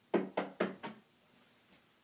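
Four quick knocks on a hard surface, about four a second, given as a knock at the door.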